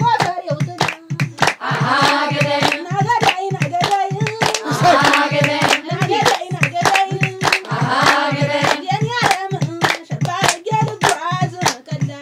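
A woman singing an Ethiopian folk song, with a group clapping along in a steady rhythm over a low drum beat.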